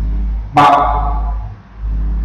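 Low, steady electrical hum in the recording that cuts in and out, with one brief pitched blip about half a second in.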